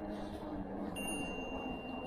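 Vamoose Mammoth dual-hub-motor e-bike riding along pavement: a low steady hum, joined about a second in by a thin, steady high-pitched whine.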